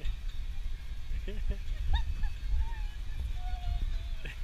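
Brief, faint fragments of people's voices over a steady low rumble, with two short single-pitch tones in the second half.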